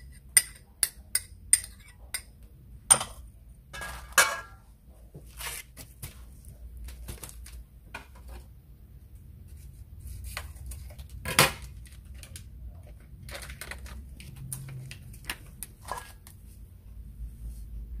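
A metal spoon clinking against a small ceramic bowl and a stainless-steel mixing bowl while scallion oil is spooned out: a quick run of light clinks in the first couple of seconds, then scattered single clinks and knocks, the loudest about eleven seconds in. A faint low hum sits underneath.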